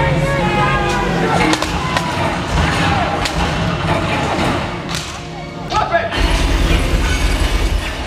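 Live stunt-show sound over loudspeakers: shouted, amplified voices and music, with a few sharp bangs from staged gunfire.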